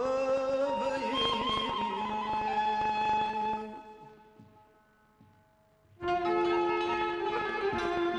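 Kurdish traditional ensemble music with struck santur strings, violin and frame drum. The phrase dies away about three and a half seconds in to near silence, and the ensemble comes back in with held notes about six seconds in.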